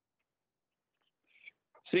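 Near silence on the remote-meeting audio feed, broken near the end by a brief faint breath-like hiss, then a voice begins speaking.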